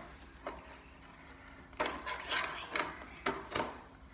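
A plastic milk bottle being handled and capped: a faint tap, then a quick run of five or six light knocks and clicks from about two seconds in.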